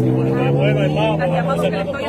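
A motor vehicle engine running nearby, its pitch rising slowly as it revs up, then fading out near the end, under people talking.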